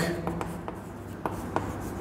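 Chalk writing on a chalkboard: a faint scratching with several short ticks as the letters are stroked on.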